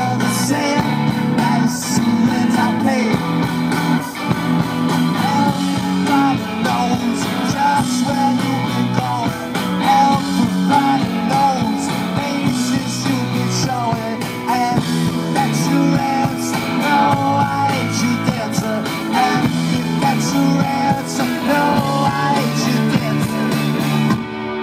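Rock band playing live at full volume: electric guitars, bass and drums, with a male lead vocal over the top.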